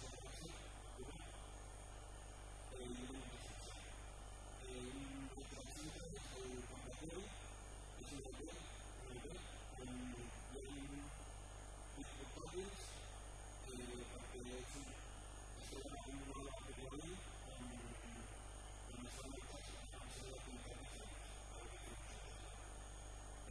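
A man talking at low level, over a steady electrical mains hum.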